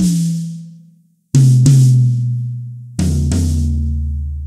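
Drum-kit toms played in turn from high to low: the 8-inch rack tom, struck just before, rings and dies away; the 10-inch rack tom is hit twice about a second in; then the 14-inch floor tom is hit twice near the end, each drum lower in pitch and ringing out.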